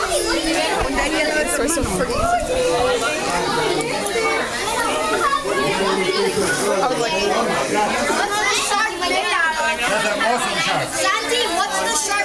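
Many people talking at once: overlapping chatter of adults and children in a crowd.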